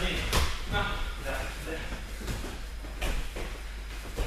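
People talking and calling out in a large sports hall, with one sharp knock about a third of a second in and two fainter knocks about three seconds in.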